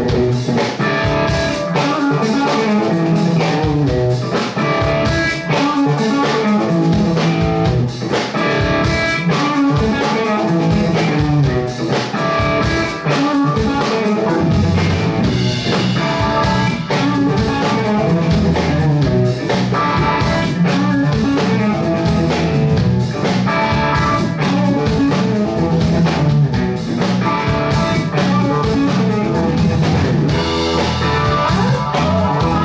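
Live instrumental blues-rock band: an electric guitar plays lead lines over drum kit, electric bass and keyboards. The bass and low end grow fuller about halfway through.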